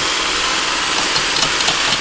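Steady hiss, with a few faint metal clicks of hardware being handled at a seat bracket about halfway through.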